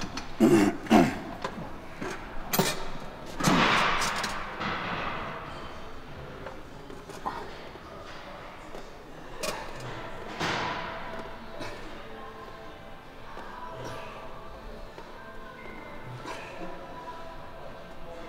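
Background music under a man lifting through a set of barbell preacher curls: two short grunts about half a second and a second in, a knock a little later, and long, forceful breaths around four seconds and again near ten seconds.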